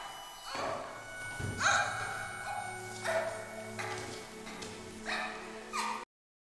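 Tense dramatic film score: a series of sharp downward-swooping accents, about six of them at uneven intervals, over a low sustained drone that enters about a second and a half in.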